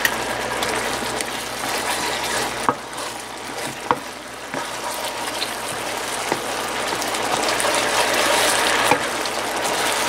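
Thick soy glaze sauce bubbling and sizzling steadily as it reduces in a nonstick skillet around pieces of chicken. A few sharp clicks come from the wooden spatula stirring against the pan.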